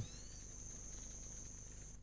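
Faint outdoor ambience of insects trilling: one steady, thin, high-pitched tone that stops suddenly at the end.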